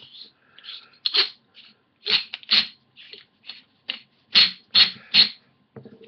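The hood of a LumaForce LF1 flashlight being screwed by hand onto its long-threaded body, close to the microphone: a string of about ten short scraping clicks and rubs, roughly every half-second, as the hands twist and regrip.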